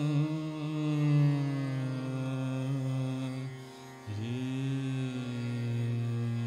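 Male Hindustani classical vocalist singing Raag Chhaya Nat in long held notes with slow glides, over harmonium and a tanpura drone, with no drumming: an unmetred opening alaap. About three and a half seconds in the voice drops away briefly for a breath, then a new held note slides up into place.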